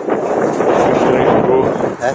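Wind buffeting the camera microphone: a steady, loud rushing noise, with faint voices under it.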